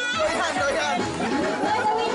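Several adults talking over one another, with music playing underneath.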